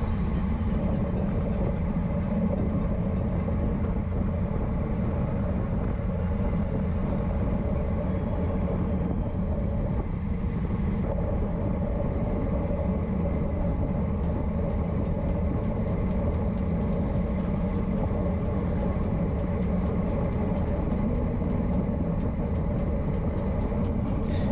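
Steady wind rush on a bike-mounted camera's microphone at racing speed, about 26–28 mph, mixed with tyre noise on the road surface.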